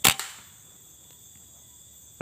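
A single sharp shot from a scoped air rifle fired at a squirrel, right at the start, with a fainter knock a fraction of a second after and a short tail. A steady high insect drone runs underneath.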